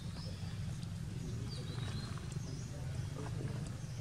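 Steady low outdoor rumble with a few short, high-pitched chirps from small animals, the first near the start and two more past the middle.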